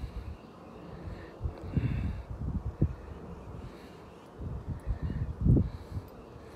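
Wind buffeting a phone microphone outdoors: irregular low rumbling gusts, the strongest about two seconds in and again just before the end.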